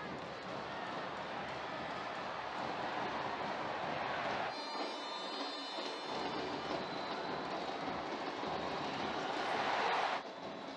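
Stadium crowd noise at a football match, a steady din of spectators that swells a little near the end. About four and a half seconds in, for a second and a half, the low end drops away and several steady high tones sound over it.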